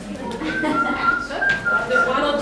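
Someone whistling a few held notes of a tune, starting about half a second in, with voices underneath.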